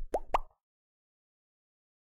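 Two quick rising 'bloop' pop sound effects in close succession, the cartoon-style click sound of an animated button being pressed.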